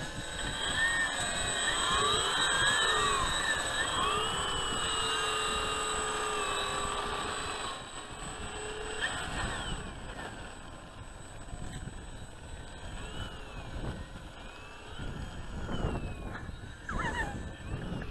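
Several radio-controlled warbird model airplanes' motors and propellers running together, their pitches rising and falling and crossing as throttles change while the models taxi on the runway. The sound is loudest in the first half, eases off, then swells again near the end as the models start their takeoff roll.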